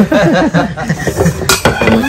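People chattering and chuckling, with a sharp click about one and a half seconds in.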